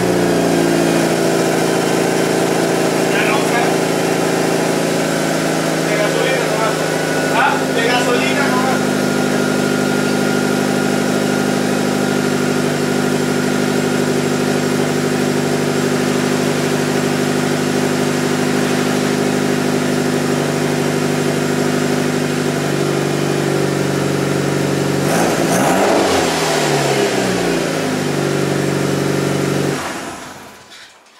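Mitsubishi Lancer Evolution 9's 4G63 turbocharged four-cylinder engine idling steadily through a freshly fitted test pipe in place of the catalytic converter, so the exhaust runs catless. About 25 seconds in the revs rise briefly and fall back to idle.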